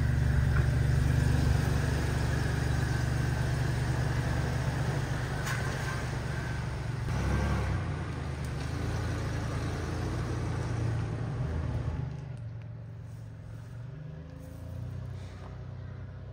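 Pickup truck engine running as the truck pulls away from the curb and drives off, with a brief rise in engine sound about seven seconds in, then fading sharply about twelve seconds in.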